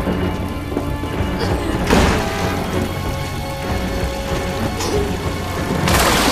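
Film soundtrack of steady rain under a low, sustained musical drone, with two sudden cracks of thunder, about two seconds in and at the end.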